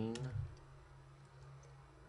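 A few computer mouse and keyboard clicks while values are entered in editing software, over a faint low steady hum.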